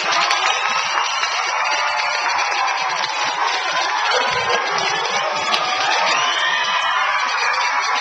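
A large crowd of schoolchildren cheering and shouting together, mixed with clapping, at a steady loud level throughout.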